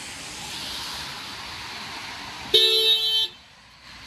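A car horn honks once, a single loud, flat-pitched blast of under a second, over a steady outdoor hiss.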